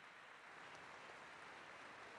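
Faint, even patter of audience applause, close to silence.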